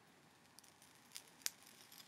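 Near silence broken by a few faint, sharp little clicks from handling a rebuildable dripper atomizer and its vape mod, the sharpest about one and a half seconds in.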